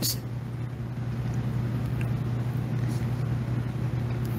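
A steady low hum with faint background hiss, with no other distinct event: room or equipment noise during a pause in speech.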